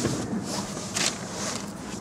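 Rustling and shuffling of clothing against a cloth car seat as someone settles into the driver's seat, with handling noise and a brief scuff about a second in.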